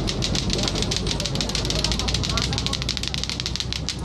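Busy market ambience: a murmur of background voices over a low rumble, with a rapid, evenly spaced clicking that goes on throughout.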